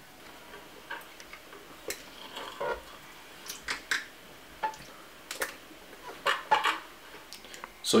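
Metal fork clinking and scraping on a ceramic plate while eating: irregular light clicks and taps, some close together.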